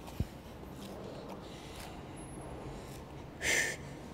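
A single low thud about a quarter second in, from a person dropping his hands to the floor to go into a plank, then quiet room noise. Near the end comes a short, sharp breathy exhale.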